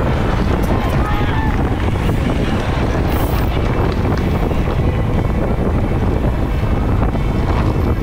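Steady wind rushing over a bike-mounted camera's microphone as a road bike races at speed in a criterium bunch.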